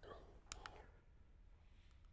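Near silence with two quick faint clicks about half a second in, from the button of a handheld presentation remote advancing the slide.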